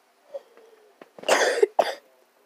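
A woman coughing: one long cough about a second in, then a second, shorter cough right after it.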